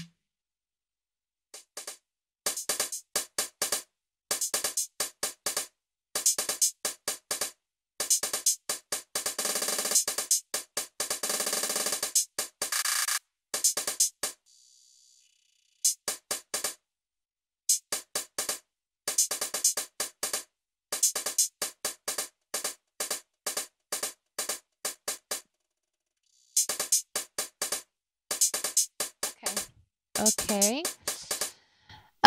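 Drum machine playing a dry, unprocessed beat of quick, sharp hits, with dense rapid rolls around the middle. It stops and starts again several times, with short silent gaps between passages.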